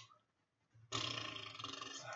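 A man's long breathy exhale or sigh close to the microphone. It starts suddenly about a second in and lasts over a second.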